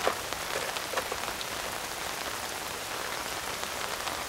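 Steady rain falling, with a few soft ticks in the first second or so.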